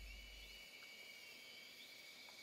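Near silence: a faint low tail dies away in the first half second, leaving only a faint steady high-pitched whine and hiss.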